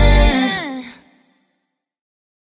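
The ending of a pop/R&B song: the beat and bass stop a third of a second in, and a last breathy vocal note slides down in pitch and fades out by about a second in.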